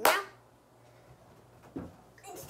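A sharp knock right at the start, then a duller thump near the end, from someone moving about and handling things at a cupboard's shelves.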